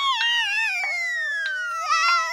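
Cartoon falling sound effect: a long whistle gliding steadily down in pitch, over a cartoon character's high, wavering wail as it falls.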